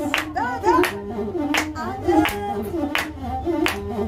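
Steady hand-clapping, about three claps every two seconds, over a masenqo (Ethiopian one-string bowed fiddle) playing a repeating melody. A singing voice with gliding notes comes in at times.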